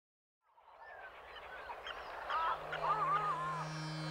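Bird calls fading in from silence about half a second in: many short chirps and whistles over a soft haze, growing louder. A low steady drone enters near three seconds.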